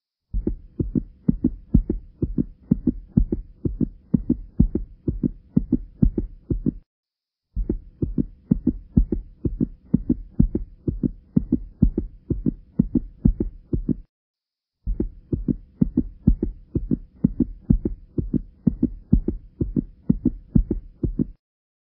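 A steady rhythm of low thumps, about two a second, in three stretches of about six and a half seconds with short silent gaps between them.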